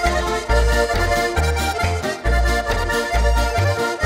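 Several diatonic button accordions playing a lively folk tune together over a steady, pulsing bass line.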